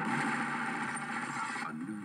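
An action film trailer's soundtrack played from a TV set: a dense, steady rush of sound effects that drops away sharply near the end.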